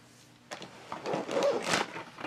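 Plastic packaging crinkling and rustling as it is handled, starting about half a second in and loudest near the end.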